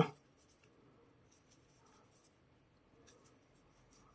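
Faint scratchy rustling of a metal crochet hook drawing thick tape yarn through stitches, in a few soft irregular strokes.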